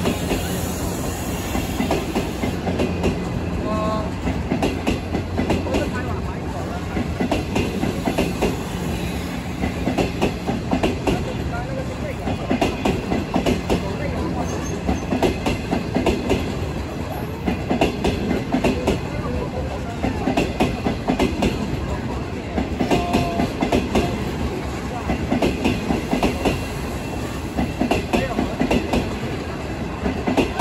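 Type 25G passenger coaches rolling past, their steel wheels clattering over the rail joints in clusters every couple of seconds over a steady rumble. A low steady hum fades out about two seconds in.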